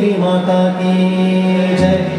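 A man singing a Hindu devotional chant to harmonium accompaniment, holding one long steady note. The note breaks off near the end.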